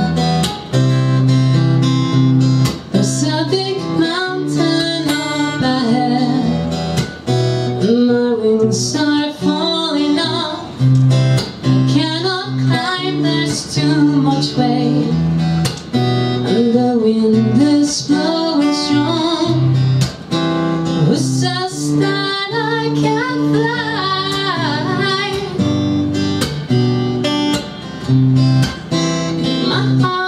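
A woman singing an Americana song live, accompanying herself on acoustic guitar.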